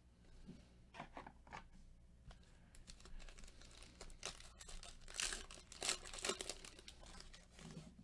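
Plastic wrapper of a Panini Mosaic basketball card pack being torn open and crinkled by gloved hands, a faint crackling that is loudest a little past the middle. A few soft ticks come about a second in.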